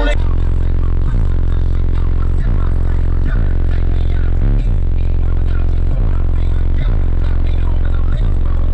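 Deep bass line of a hip-hop track played very loud through four Sundown ZV6 18-inch subwoofers on DS18 amplifiers, heard inside the vehicle's cabin. The bass notes shift in pitch about once a second.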